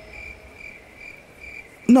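Cricket chirping sound effect: a soft, high chirp repeating about four to five times a second over near quiet. It is the comic "crickets" cue marking an awkward silence after a rap joke falls flat.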